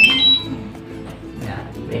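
DJI Mavic Mini remote controller's power-on beeps: a short run of high beeps rising in pitch right at the start, the sign that the controller has switched on. Background music plays throughout.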